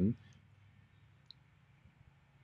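A man's voice trailing off, then a pause of faint background hiss with one small, sharp click just over a second in.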